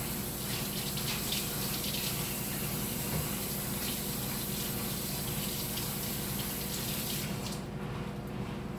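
Kitchen sink tap running with splashing as hands are washed under it, the water shutting off about seven seconds in.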